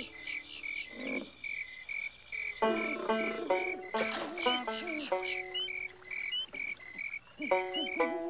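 Bayou ambience from the Pirates of the Caribbean ride: crickets chirping in an even pulse, about two and a half chirps a second, with frogs croaking over it in irregular calls.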